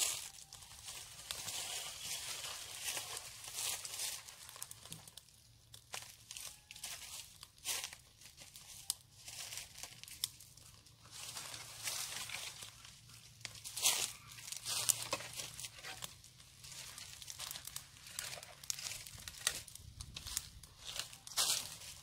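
Dry wood crackling and rustling: a small twig fire burning between bricks while dry branches are laid on it, giving irregular crackles with a few louder sharp snaps.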